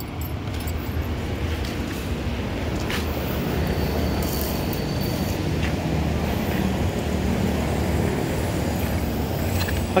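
A motor vehicle engine running steadily at idle, with a faint click about three seconds in.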